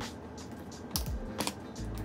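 A few sharp plastic-on-plastic clicks as the Pocket Tripod Pro's legs are snapped off its base by hand, over background music.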